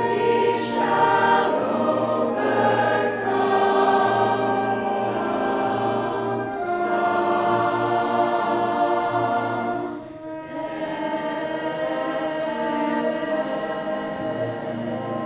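Choir singing a slow piece in long held chords, with a short dip in loudness about ten seconds in.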